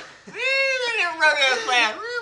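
A person's long, high-pitched falsetto cry, its pitch rising then slowly falling over about a second and a half.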